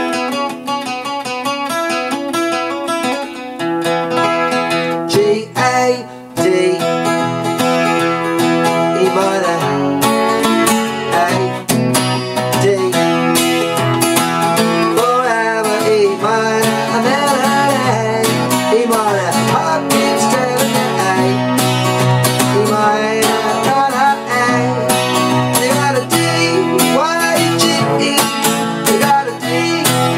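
Acoustic guitar played in a lively rock-and-roll rhythm, capoed at the second fret and fingered in D-shape chords so that it sounds in the key of E.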